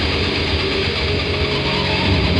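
Heavy rock music: a dense, steady wall of electric guitar and bass with a heavy low end.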